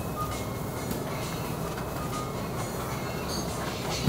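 Steady low rumble of supermarket background noise, even throughout with no distinct events.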